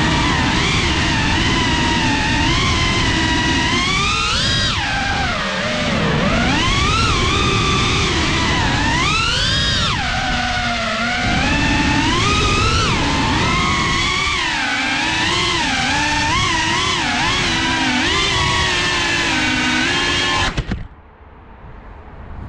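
FPV quadcopter's brushless motors whining, the pitch sliding up and down with throttle changes, over a low rumble of prop wash on the onboard camera microphone. The whine cuts off suddenly near the end, leaving much quieter background noise.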